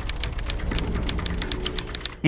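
Fast typing on a computer keyboard: a quick, uneven run of key clicks.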